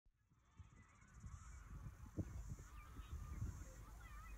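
Faint outdoor ambience: birds calling now and then in short, gliding cries over a low, uneven rumble.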